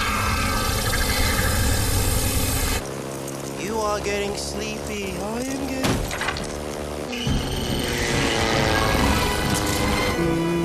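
Action-movie soundtrack mix: music under a dense rush of aircraft engine and swarm noise, which thins out for a few seconds in the middle. Short gliding squeals and a single sharp hit come through there, before the engine noise returns.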